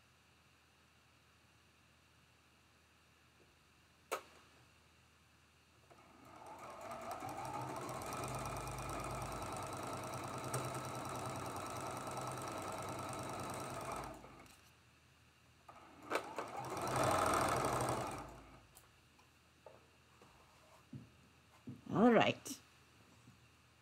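Electric sewing machine stitching a seam through quilt-block fabric: it speeds up about six seconds in, runs steadily for about eight seconds and stops, then makes a second, shorter and louder run near the end. A single click comes about four seconds in.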